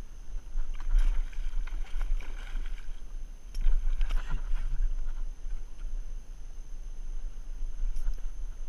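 A landed musky thrashing and splashing in shallow water and wet mud at the water's edge, in two spells of slaps and splashes, the first about a second in and the second, louder one around four seconds in.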